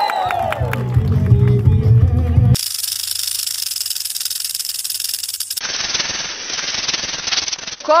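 Music with a heavy bass and voices, cut off abruptly about two and a half seconds in by a rattlesnake rattling: a dense, high, steady buzz that carries on, duller, almost to the end.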